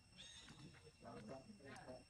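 Faint, distant human voices chattering, with a brief high chirp about a quarter of a second in.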